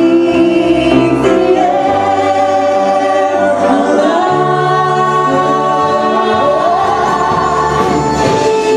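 Mixed ensemble of male and female voices singing long held notes in harmony over live band accompaniment, with the bass notes changing a few times.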